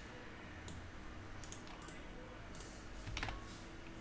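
Faint, scattered clicks of a computer keyboard and mouse, a handful of separate keystrokes and clicks, one a little louder about three seconds in.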